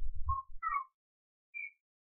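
A pause in speech: a faint low rumble and a few brief soft blips in the first second, one faint short tone a little later, otherwise near silence.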